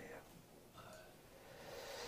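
Near silence: room tone in a pause between spoken sentences, with a faint soft in-breath near the end.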